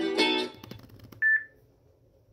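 Plucked-string, guitar-like chord from a hip-hop instrumental beat, ending on a sharper pluck that fades out within half a second. About a second in comes one short, high, pure beep.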